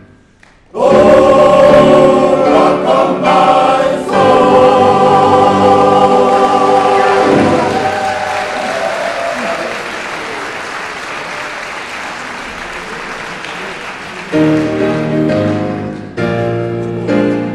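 Men's choir singing loud sustained chords, with a brief break about four seconds in, then stopping. Audience applause follows for several seconds. Near the end a piano starts playing.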